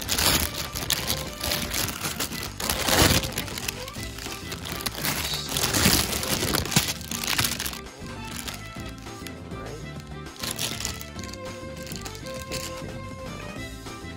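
Clear plastic packaging bag crinkling and crackling as it is torn open by hand, over background music; the crinkling dies away a little past halfway and the music carries on.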